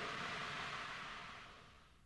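Faint hiss of an old recording, tape noise left after the voice stops, fading out to silence near the end.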